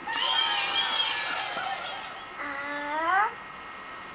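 Fisher-Price electronic toy barn with letter buttons playing its sounds: a high, wavering electronic tone for about two seconds, then a short sound rising in pitch near the end.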